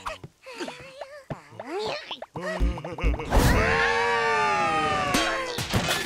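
Cartoon soundtrack of wordless character vocalizations and sound effects: short exclamations first, then a long, loud cry of several pitches sliding slowly downward, broken off by a sudden hit near the end.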